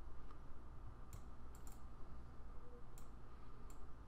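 Faint, scattered clicks of a computer mouse, about six in four seconds at irregular spacing, as the pointer pages down a long on-screen list.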